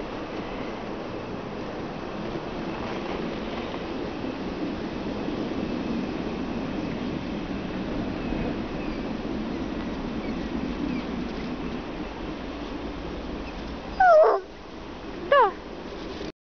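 A bloodhound gives two short high whines near the end, each falling in pitch, over a steady background hiss.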